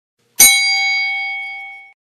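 A single bright, bell-like ding sound effect, struck about half a second in and ringing down for about a second and a half before it cuts off suddenly.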